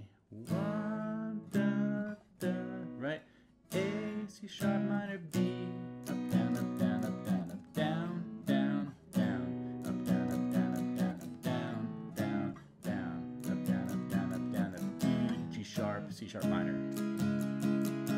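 Steel-string acoustic guitar strummed through the bridge chords A, C♯ minor and B. For the first four seconds these are single strums, each left to ring about a second apart; after that the playing turns into continuous strumming.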